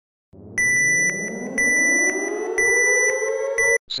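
Electronic alarm sound effect: a steady high beep over a pitched tone that rises slowly, ticked through by clicks about twice a second. It lasts about three seconds and cuts off suddenly.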